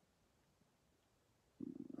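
Near silence: room tone, broken near the end by a short, low, buzzy hum of a man's voice that leads straight into speech.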